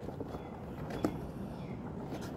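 Faint handling noise from hands stretching and pulling the rubber facepiece of a Soviet PBF gas mask while buttoning its filter in, with a small tap about a second in.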